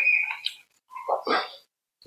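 Brief, broken vocal noises from a person, like throat or hesitation sounds, with the sound cutting out to silence between them.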